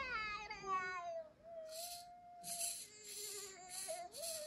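Eilik desk robot playing a cartoon crying sound through its small speaker: a falling whine in the first second, then long wavering whimper tones broken by three or four short hissy sobs.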